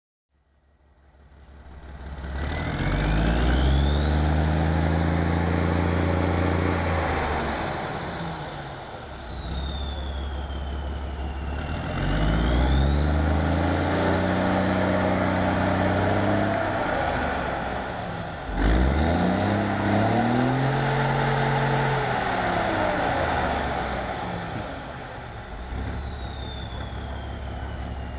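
Sultana bus's diesel engine revved hard three times: each rev rises, holds for several seconds, then falls back toward idle, with a high whistle climbing and falling along with the engine speed.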